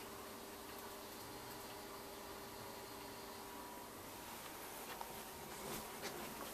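Quiet room tone: a faint steady hiss with a thin, steady hum, and a few soft clicks near the end.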